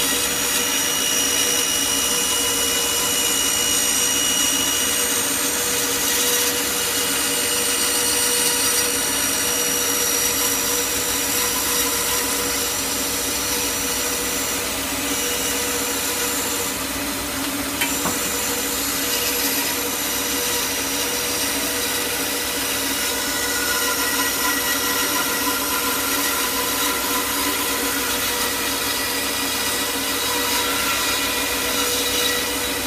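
Record Power BS 250 bandsaw running steadily, its blade cutting through a wooden board fed by hand: a continuous machine hum under the rasp of the cut, with one brief click about 18 seconds in.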